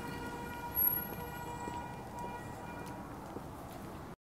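A steady electronic hum, one held tone with a ladder of even overtones that slowly fades, over faint street noise. It is typical of the low-speed pedestrian warning sound of a robotaxi arriving at the curb.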